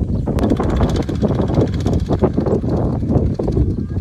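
Single-cylinder diesel engine of a Kubota two-wheel walking tractor chugging with a rapid, uneven knock as it pulls a loaded rice trailer through a muddy paddy.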